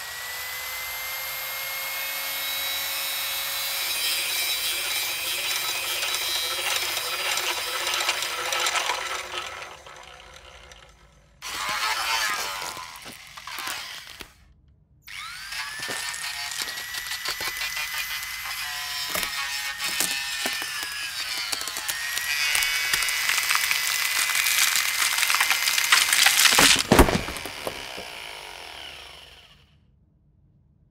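A power tool's motor spins up with a rising whine and runs steadily, dying away after about ten seconds; after a rough burst and a brief silence it spins up again and runs on with knocks and clatter, with one sharp crash shortly before it stops.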